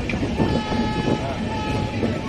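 Passenger express train's wheels rumbling and clattering over the station-yard tracks, heard from the doorway of one of its moving coaches. A steady horn tone comes in about half a second in and holds for over a second.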